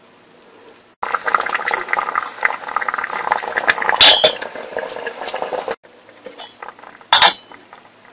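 A metal ladle clinks and scrapes against ceramic ramekins in a stainless steel steamer pot. A loud clank about four seconds in comes as the steel lid is set on the pot. Another sharp clank of metal cookware follows near the end.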